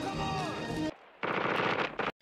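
Film soundtrack: music, then from a little after a second in a dense burst of rapid automatic gunfire.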